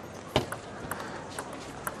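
Table tennis ball struck and bouncing in a rally: one sharp click about a third of a second in, then lighter ticks of the celluloid ball on bats and table, over a steady hush of arena background.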